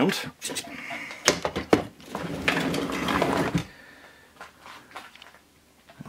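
Handling noise as an Anet A8 3D printer is turned round: a few knocks and clicks, then a scraping slide lasting about a second and a half, followed by a few faint clicks.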